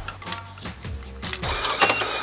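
An electronic bus farebox starts whirring about a second and a half in, with a sharp click, as it takes in the coins dropped into it. Background music plays throughout.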